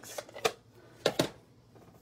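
Paper and cardstock handled on a tabletop: a few brief rustles and taps, two short clusters about half a second and a second in.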